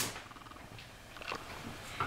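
A spoon stirring in a saucepan stops with a last click right at the start. After that there is only quiet room noise with a faint low rumble and a soft tick or two about a second and a half in.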